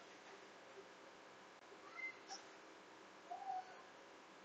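Near silence with faint room hiss, broken by a few short, faint animal calls, most likely birds: a couple of thin high calls about two seconds in and a brief warbling call near the end.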